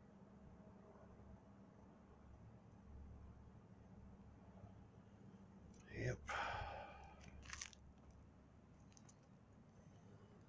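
Near silence: faint steady low background hum. About six seconds in, a man says a single word, followed by a short breathy noise.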